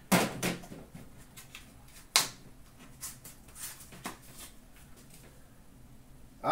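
Metal card tins and their contents being handled: a knock as a tin is set on a stack of tins, a sharp click about two seconds in, then a few lighter clicks and rustles.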